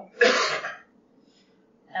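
A person clearing their throat once, briefly, just after the start, followed by quiet.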